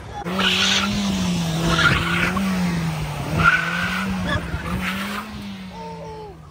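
Car engine held at high revs, its pitch wavering slightly, while the tyres spin and squeal on asphalt in a smoky burnout.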